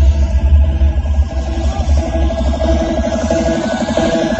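Loud electronic tekno dance music from a free-party sound system: a heavy bass line under a fast, repeating synth pattern. The deep bass drops away shortly before the end.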